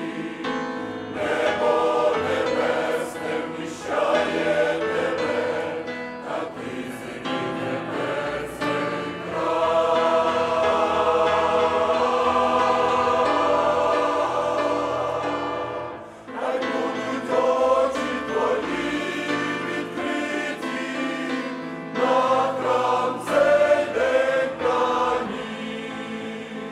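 Mixed church choir singing a hymn with piano accompaniment. Midway the choir holds one long chord for several seconds, then the sound dips briefly before the singing resumes.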